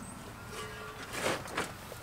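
Dry wood chips being handled for tossing onto a compost pile: a short rustling scrape a little over a second in, with a smaller one just after.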